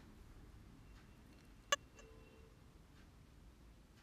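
Near silence broken by a single sharp click about halfway through, as a stand mixer's tilt head is lowered and locked onto the bowl, followed by a faint brief tone. The mixer's motor is not yet running.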